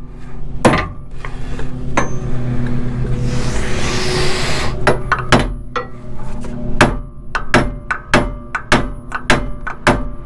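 Hammer blows, metal on metal, against the steering linkage of a Ford F550 chassis, knocking the stuck old steering stabilizer loose without a pickle fork. Two strikes, then a burst of rustling noise about three to five seconds in, then a steady run of about two blows a second.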